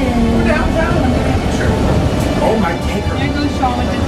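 Steady running rumble of a REM light-metro train heard from inside the car, with passengers' indistinct chatter over it.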